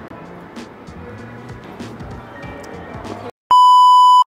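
Background music with a steady beat that cuts off about three seconds in. After a brief silence comes a loud, steady test-tone beep of the kind played with television colour bars.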